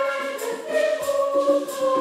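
Church choir singing a hymn in Swahili, with tambourine and shakers keeping about two beats a second under the held sung notes.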